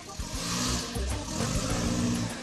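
A car pulling away: its engine drones as it picks up speed, with a rush of tyre and road noise.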